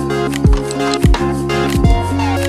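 Lo-fi instrumental music: a kick drum hits three times over held bass notes and chords.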